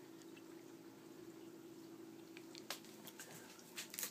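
Faint water trickling from a running saltwater reef aquarium, with a low steady hum and a single soft click a little over halfway through.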